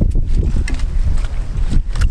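Wind buffeting the microphone: a loud, steady low rumble, with a few light clicks through it.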